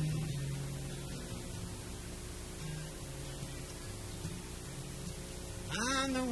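Steady electrical mains hum from the stage sound system, with a few soft, short low notes picked on an acoustic guitar. A voice comes in near the end.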